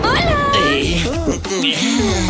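High, gliding, cartoon-like vocal sounds over background music with a steady low beat. The first cry swoops up and bends down about a quarter second in, and wavering silly vocalizations follow.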